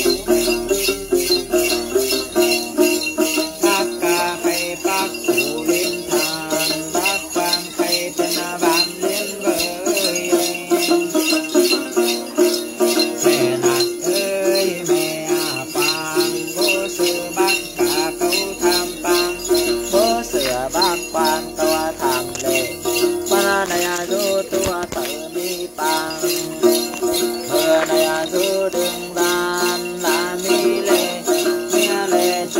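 Bunches of small metal jingle bells (Then ritual shakers) shaken by hand in a steady beat, with a woman singing a chant-like Then song over them.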